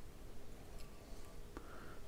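Quiet room tone with a faint steady low hum and one faint click near the end.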